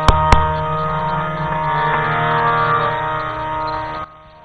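Kirtan accompaniment with held harmonium chords sounding steadily. Two sharp knocks come just after the start, about a quarter second apart.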